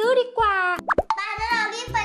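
A child's high-pitched speaking voice over light children's background music, with a short sound effect, a quick sharp pitch sweep, about a second in.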